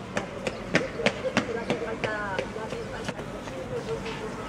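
Voices of people outdoors, with a quick run of sharp taps, about three a second, in the first two seconds and a short call about halfway through.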